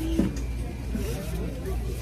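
Indistinct voices over a steady low rumble, with a single short knock just after the start.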